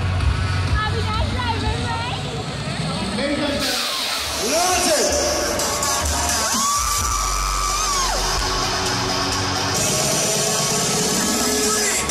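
Dance music with a steady beat plays under a crowd talking and cheering, with whoops and one long held shout about halfway through.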